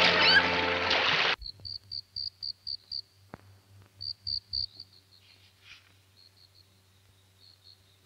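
Loud music with children's shouts cuts off suddenly about a second and a half in. After it come insects chirping at dusk: short high chirps, about four a second, in several bursts that grow fainter towards the end.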